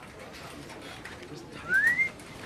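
A short whistle-like tone gliding upward, about a third of a second long near the end, over faint room tone with light clicks.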